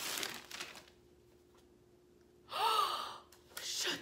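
Gift wrapping paper being torn and crinkled for under a second, then a short gasp-like vocal exclamation about two and a half seconds in.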